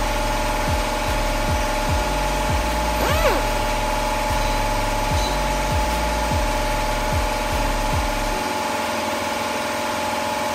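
Pneumatic dual-action (DA) sander running with a steady whine, sanding old paint off a car bumper.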